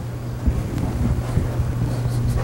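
Steady low electrical hum with a low rumbling noise through the sound system, and a few soft low thumps about half a second and one and a half seconds in.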